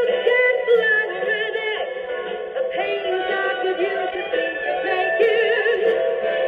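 A song with singing, played back from a tape cartridge on a 1962 Bell-O-Matic recorder and heard through its speaker, with a thin sound that has no high treble.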